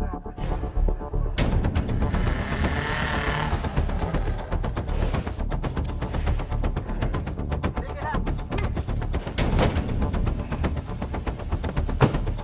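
Loud action-film soundtrack: music driven by a rapid, even train of sharp percussive hits, starting abruptly about a second and a half in.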